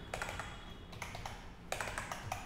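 Computer keyboard being typed on: a scatter of separate short keystroke clicks, in small runs, as a line of code is entered.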